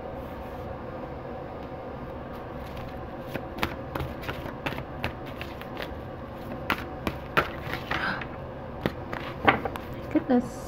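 A large tarot card deck shuffled by hand: irregular light clicks and slaps of cards from about three seconds in, growing busier and loudest near the end, over a steady room hum.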